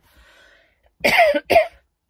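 A woman coughs twice about a second in, two short loud coughs close together, after a faint breath.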